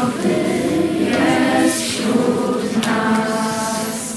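A group of voices singing a slow, choir-like song with long held notes.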